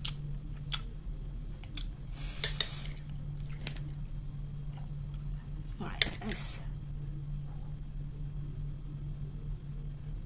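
Close-up eating sounds: chewing, with a few sharp clinks of metal cutlery against a ceramic plate, the clearest about six seconds in, over a steady low hum.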